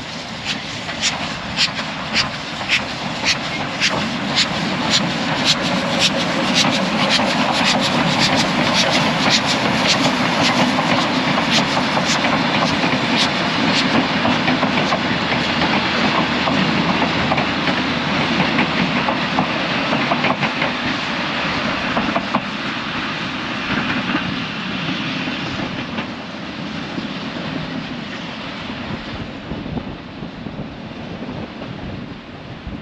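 Steam locomotive chuffing steadily, about two beats a second, as it pulls a heritage passenger train past. After the engine goes by, the chuffs give way to the rolling rattle and clack of the carriages on the rails, which fades as the train moves away.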